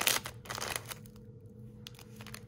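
Clear plastic bag crinkling as a plastic clamshell of wax melt is pulled out of it, loudest in the first moment, then a few softer rustles fading under a faint steady hum.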